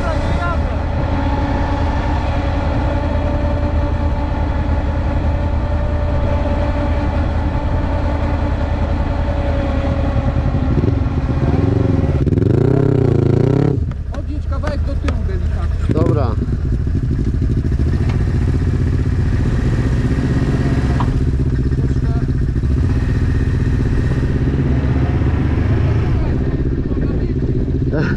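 Quad bike (ATV) engine idling close up. Its pitch rises and wavers for a couple of seconds about halfway through, then briefly rises again shortly after.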